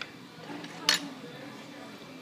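A single sharp clink of tableware about a second in, over a faint low murmur of voices.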